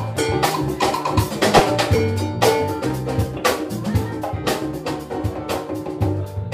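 Live salsa band playing: sharp drum and hand-percussion hits over an electric bass line and other pitched instruments, in a steady dance rhythm.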